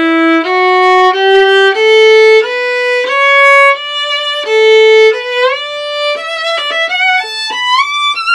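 Solo violin playing a slow rising scale of bowed notes, about one every half second. About halfway it drops back and climbs again, higher, with quicker notes and audible slides between positions as the hand shifts up the fingerboard.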